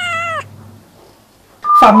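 A single high-pitched meow, about half a second long, rising and then falling in pitch, followed by a short pause before speech starts near the end.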